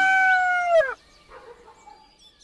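Rooster crowing: the long final note of the crow is held, then drops in pitch and cuts off just under a second in.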